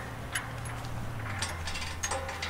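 A few light metallic clicks and clinks as aluminium loading ramps are fitted against the back of a truck, over a low steady hum.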